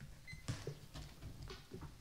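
Faint handling noise at a lectern microphone: a few light knocks and rustles, the clearest about half a second in.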